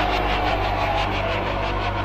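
A rattling sound effect starts suddenly and pulses fast, about eight beats a second, then fades. Under it runs a low steady drone from the horror soundtrack.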